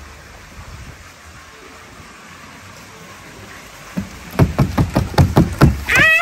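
A steady noisy hiss. About four seconds in comes a quick run of loud thumps, about five a second for two seconds: a hand patting or slapping the top of a large cardboard box.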